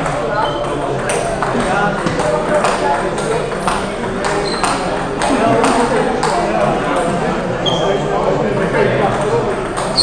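Indistinct chatter of many voices echoing in a large sports hall, with sharp clicks of table tennis balls striking bats and tables, roughly one every half second to second, and a few brief high pings.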